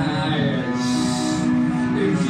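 Harmonica playing sustained chords, with a short breathy rush of air about a second in.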